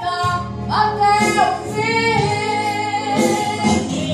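A woman singing a Portuguese gospel song into a microphone, amplified through a loudspeaker, with long held notes over a steady instrumental backing.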